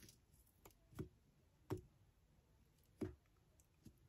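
Near silence with three faint clicks spread over a few seconds. They come from hands flexing the insulation of a heavy 4/0 battery cable at a scored ring, working it loose to strip it.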